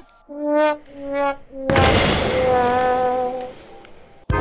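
Sad-trombone 'fail' sound effect: three short brass notes stepping down in pitch, then a long held note. A burst of noise starts under the long note about a second and a half in. The effect marks a failed attempt.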